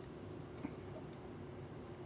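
Quiet room tone with a faint steady hum, and one light click about two-thirds of a second in as the plastic brake pad thickness gauges are handled.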